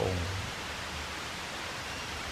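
A man's voice finishes a word at the very start, then a steady hiss of background noise fills the rest.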